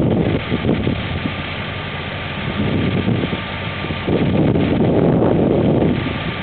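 Wind rumbling on the microphone in gusts, strongest at the start and again from about four seconds in, over a steady low hum.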